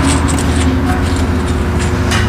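A machine running steadily, a loud even drone with a low hum, with a few faint light clicks of metal parts being handled at the engine's exhaust studs.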